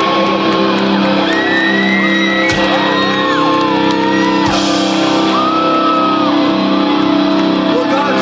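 A rock band playing live and loud through an outdoor stage PA: steady held notes underneath, with higher notes sliding up and down over them.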